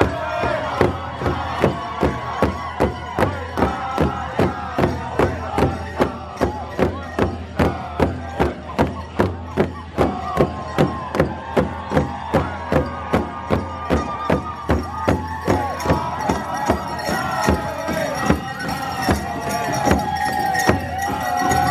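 A drum beaten in a steady beat, about two strokes a second, with voices singing over it and crowd noise.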